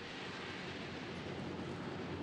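Steady outdoor background noise: a low rumble with an even hiss, holding level without a break.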